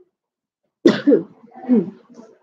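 A woman coughing: a sudden sharp cough a little under a second in, followed by two more.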